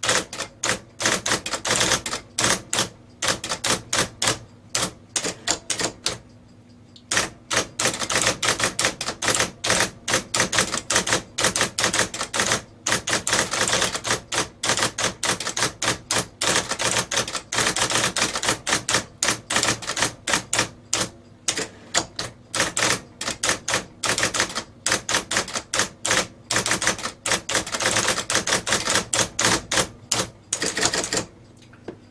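IBM Selectric II Correcting electric typewriter being typed on: the golf-ball typeball strikes the paper in fast, sharp clatters, with a short pause about six seconds in. A steady low hum from its running motor sits underneath.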